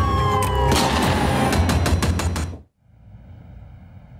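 Dramatic title-theme music with heavy bass, a slowly falling siren-like tone and a run of sharp gunshot-like hits, cutting off suddenly about two and a half seconds in. After the cut only a faint steady hiss remains.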